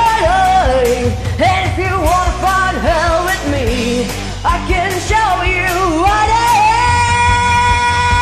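Hard rock backing track with drums and bass under a lead melody that bends up and down in pitch, ending in one long held high note from about seven seconds in.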